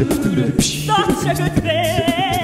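A cappella group singing live: voices holding low bass and harmony notes under crisp vocal percussion, with a lead voice coming in about halfway through on a held, wavering note.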